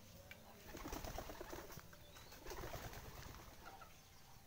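Rooster giving two low, rolling clucks, each about a second long, the second starting a little past the middle.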